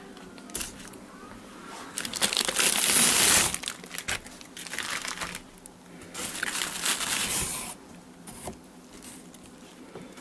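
Plastic packaging crinkling and rustling in irregular bursts as plastic-wrapped packages of meat are handled, loudest from about two to three and a half seconds in.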